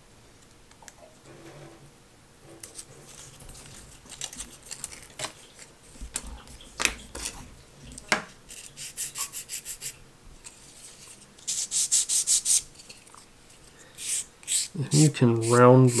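Hand sanding and scraping of a thin wooden strip, the leading edge of a model glider's vertical tail, lightly rounded off. The work comes in short bursts of quick, even strokes, the fastest about eight a second.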